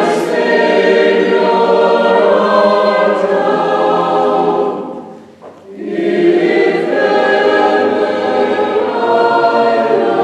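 Mixed choir singing a Christmas cantata piece in long held chords, with a short break for breath about five seconds in before the next phrase begins.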